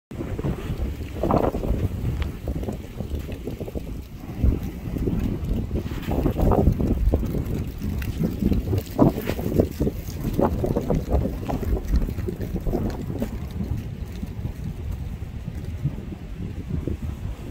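Wind buffeting the microphone in irregular gusts, a rough low rumble with no steady tone.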